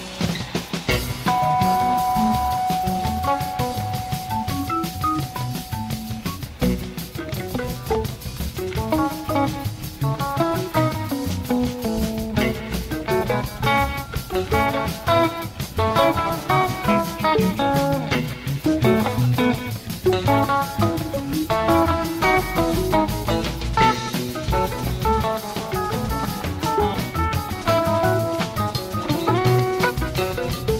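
Live rock band playing an instrumental jam: an electric lead guitar holds one long note for a few seconds, then plays quick runs of notes over a drum kit.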